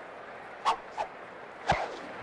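Animated-film sound effects: two short, sharp sounds about a third of a second apart, then a louder thump near the end.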